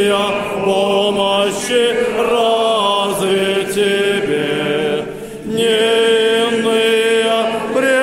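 Unaccompanied Orthodox chant sung in Church Slavonic by a group of voices, a hymn of glorification to the Mother of God, moving through long held notes with a short break about five seconds in.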